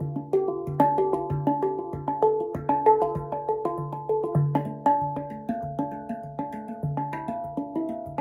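Handpan (steel hand pan) played with the hands: a quick repeating pattern of ringing, slightly metallic notes over a low note struck about twice a second, the pattern shifting to other notes on the pan.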